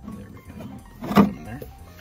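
One sharp plastic knock about a second in, as a 3D-printed cup holder insert is set down into its slot in a Tesla centre console.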